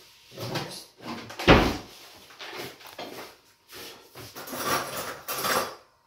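Kitchen handling noises on a countertop: a couple of knocks and a sharp thump about a second and a half in, then a stretch of rustling near the end.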